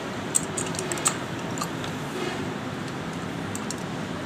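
Light metallic clicks and taps from a motorcycle carburetor being taken apart by hand with a screwdriver, a cluster in the first second and a half and a few more near the end, over steady background noise.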